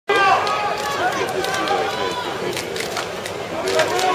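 Spectators' chatter: several voices talking at once in a crowd, with a few short sharp clicks in the second half.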